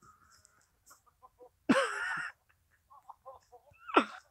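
A person's loud, high-pitched, wavering cry about two seconds in, then short breathy laughing gasps and another rising cry near the end. This is someone laughing and catching his breath after being winded by a fall on his back.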